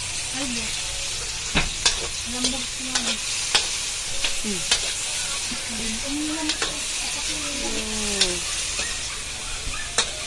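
Sliced bell peppers and vegetables sizzling steadily in oil in a hot wok as a metal spatula stirs them. Sharp clicks and scrapes come each time the spatula strikes the wok.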